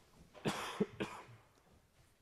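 A man coughing twice, about half a second apart, into his arm.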